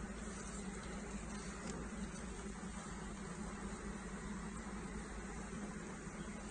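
Honeybees buzzing around an opened hive as a comb frame covered in bees is handled: a steady, even hum.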